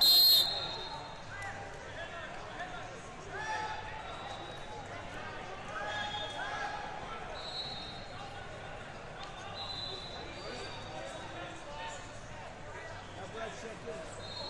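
A referee's whistle gives one short, loud blast as the match clock reaches zero, ending the bout. Fainter whistles from other mats sound a few times over steady hall chatter.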